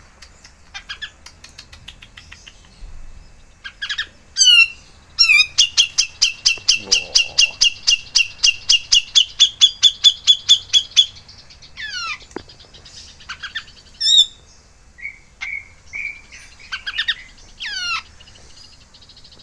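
A caged songbird calling. Scattered chirps lead into a fast, even run of about five identical sharp, rising high notes a second for some six seconds, followed by a few down-slurred whistles and short calls.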